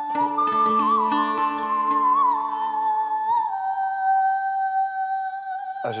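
A woman singing a slow, ornamented melody in a high voice over a steady drone accompaniment, settling into one long held note for the second half. The music breaks off suddenly just before the end.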